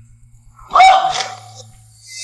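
A woman's loud shout, one cry about 0.7 s in that jumps up in pitch and is held for nearly a second before fading.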